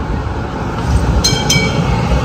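A Melbourne tram running past on its rails, a steady low rumble. A little over a second in come two short high-pitched rings.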